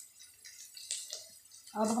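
Faint scraping and a few light clicks of a metal spoon stirring sliced onions and green chillies in a kadai. A woman starts speaking near the end.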